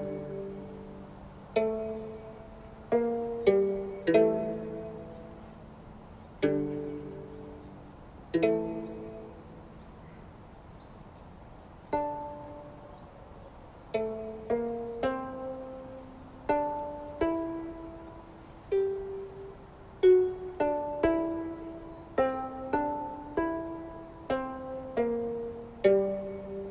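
Calm instrumental music on a plucked string instrument: single notes and chords, each struck sharply and left to ring out. The notes come slowly and sparsely in the middle, then quicken into a busier melodic run in the second half.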